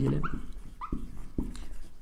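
Marker writing on a whiteboard: a few short squeaks and light taps as the strokes are drawn.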